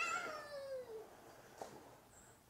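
A child's voice calling out faintly in the distance: one drawn-out, high-pitched call that falls in pitch over about a second and fades away.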